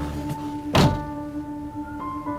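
A car door of a Hyundai hatchback shutting with one solid thunk about a second in, over steady background music.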